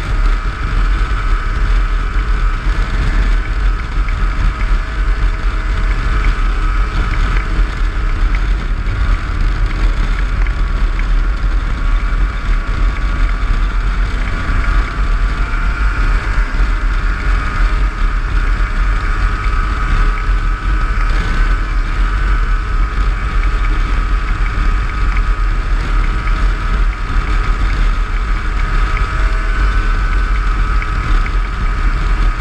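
Snowmobile running at steady trail speed: a continuous engine-and-track drone with a high whine whose pitch drifts slightly up and down with the throttle, over a heavy low rumble.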